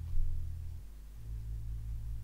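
Soft background music: a low sustained bass drone that changes note about a second in, then carries on with a gentle pulse. A faint click comes just after the start.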